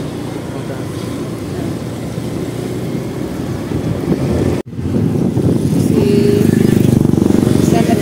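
Motorbike engine running while riding, with wind rushing over the microphone; the sound drops out abruptly a little past halfway and comes back slightly louder.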